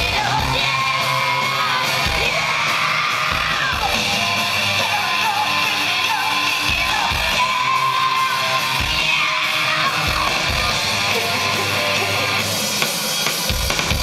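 Live electro-punk song played loud through a venue's PA, with yelled and sung vocals over guitar and a beat of low drum thumps, heard from the crowd.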